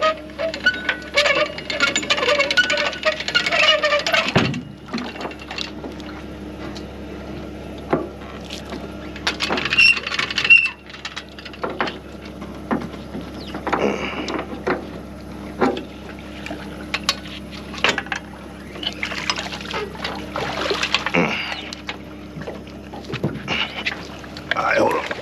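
Water splashing and pouring around a boat, in short bursts, with scattered clicks and knocks of gear being handled on the boat, over a faint steady hum.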